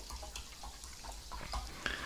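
Carbonated mineral water pouring from a plastic bottle into a ceramic bowl already holding water, faint and steady.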